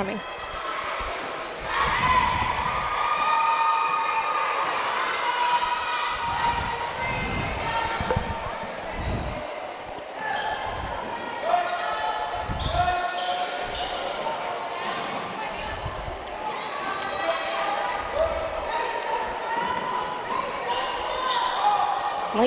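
A basketball bouncing on a hardwood gym floor in irregular deep thuds as players dribble up the court, with spectators' voices echoing in the gym.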